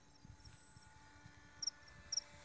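Faint outdoor insect chirping: short high chirps in pairs in the second half, over a faint steady hum.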